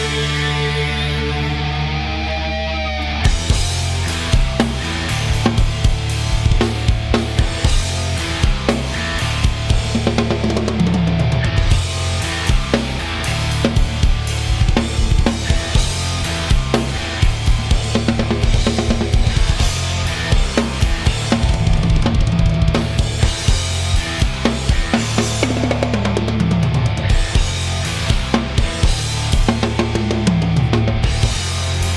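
Tama drum kit played along to a progressive metal song's recorded track, with fast kick, snare and cymbal patterns over sustained bass notes. The drumming gets much denser about three seconds in.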